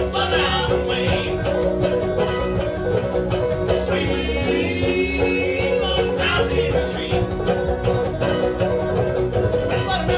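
Live bluegrass band playing a song: fast banjo picking over upright bass and acoustic guitar, with a man singing lead at times.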